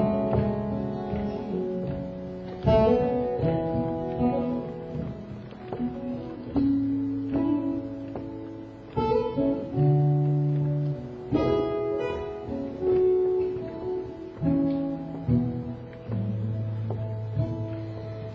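Acoustic guitar playing a slow introduction: chords struck every two or three seconds, each left to ring and fade.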